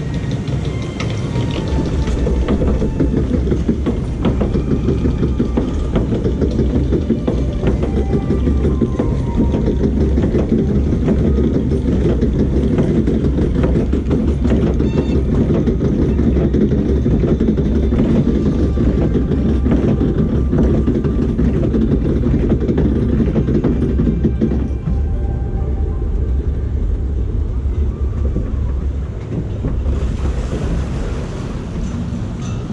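Log flume boat climbing the lift hill on its conveyor, a steady mechanical rumble and clatter. It eases off about twenty-five seconds in as the boat levels out at the top and floats onto the water trough.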